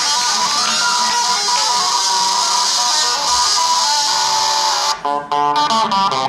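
Electric guitar music played continuously and densely, then breaking into a few short, clipped chords with brief gaps between them near the end.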